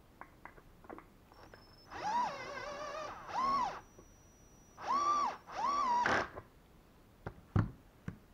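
Cordless drill driving a screw into a wooden upright in four short runs, the motor's whine rising in pitch as each run starts and dropping as it stops. A sharp knock follows near the end.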